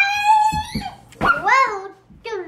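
A child's voice making two drawn-out, high-pitched wordless vocal sounds: the first glides up and holds, the second about a second later swoops up and down.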